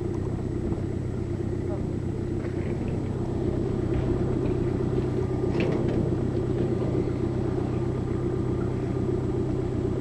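Boat engine running steadily at low speed, an even low drone while the UC3 Nautilus lies alongside the quay.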